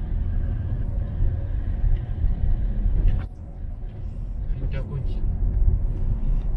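Steady low road and engine rumble heard from inside a moving car, with a brief sharp noise about three seconds in.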